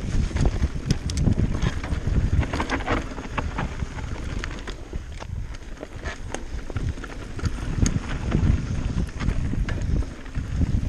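Mountain bike descending a dirt trail at speed: wind buffeting the microphone over the rumble of tyres on dirt, with the bike rattling and knocking sharply over bumps. The noise eases briefly about midway, then picks up again.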